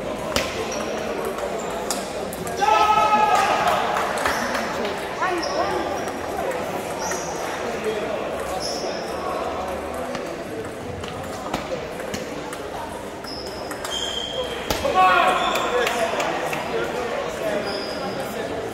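Table tennis ball clicking back and forth between bats and table in a rally, echoing in a large hall, with voices in the hall and two loud shouts, about three seconds in and again near fifteen seconds.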